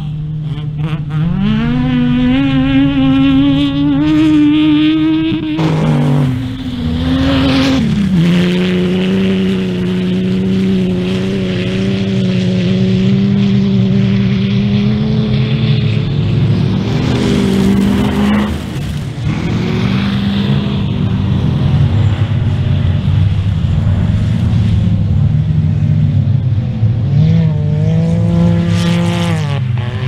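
Off-road race car engine running loud and being revved: its pitch climbs steadily for a few seconds early on, drops back, then holds at a fairly steady raised speed, with a few brief rises and dips near the end.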